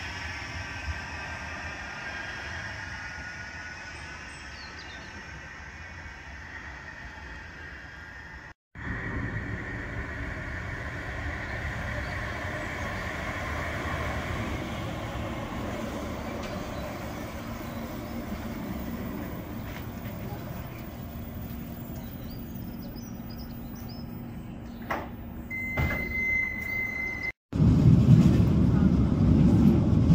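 A Bombardier Flexity M5000 tram pulls away from a platform, its motor whine falling and fading. After a cut, a tram stands at a platform with a low rumble and a short, steady beep near the end. A sudden cut then brings the louder low rumble of riding aboard a moving tram.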